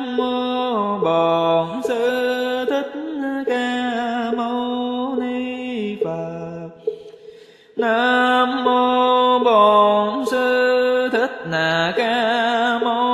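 Slow, melodic Buddhist sutra chanting: a voice holds long sung notes that step up and down in pitch, with a short pause a little past the middle.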